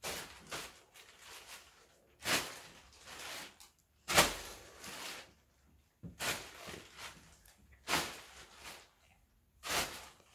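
Plastic carrier bag rustling and crinkling as it is tossed up and caught with two hands: short rustling bursts about every two seconds, the loudest about four seconds in.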